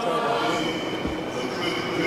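A church choir's chant trailing off in a reverberant church, with a few steady held notes ringing on.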